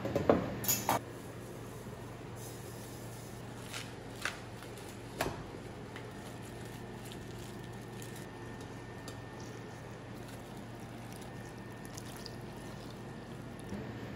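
Quartered Napa cabbage handled in a stainless steel bowl: a few short sharp crinkles and knocks in the first five seconds, the loudest about a second in, over a steady low hum.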